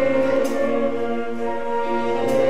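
Concert band playing a slow passage of sustained, held chords, the notes shifting to a new chord about halfway through.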